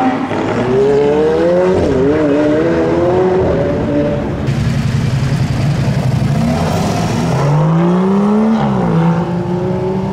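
Sports-car engines revving and accelerating away, the exhaust note climbing and dropping through several pulls, with a strong rising pull near the end.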